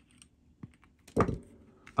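A few faint clicks, then a single short low thump a little over a second in.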